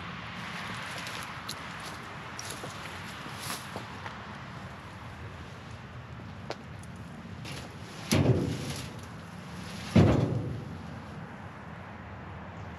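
Two loud knocks about two seconds apart, each with a short ringing decay, from the rusty iron parts of old narrow-gauge field-railway wagons being handled. Light clicks from the metal fittings come before them.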